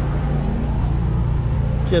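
A motor running steadily at idle: a low, even drone that holds one pitch throughout.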